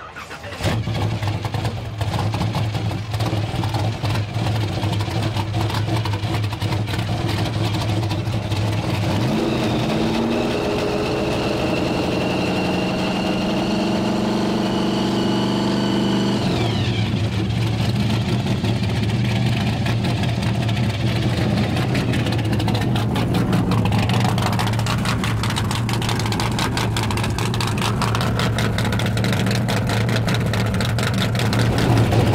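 Supercharged 502 big-block V8 with a 6-71 blower and twin Demon 775 carburetors, idling, then revved up about nine seconds in and held high for about seven seconds. A high whine rides over the exhaust while it is held up, and it drops back to a steady idle near the middle.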